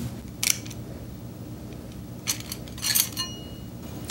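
Steel and friction clutch plates and the direct clutch drum of an automatic transmission clinking against each other as the plate pack is lifted out of the drum by hand: one clink about half a second in, then a few more near the end, the last ringing briefly.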